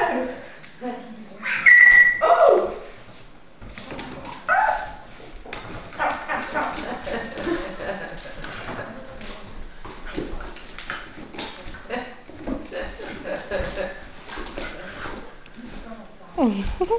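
A small dog yipping and whining a few times while it plays, the loudest calls about two seconds in and again a couple of seconds later, with its claws clicking and skittering on a hardwood floor.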